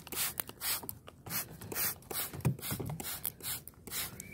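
Hand-held trigger spray bottle being pumped again and again, a quick series of short hissing squirts of liquid.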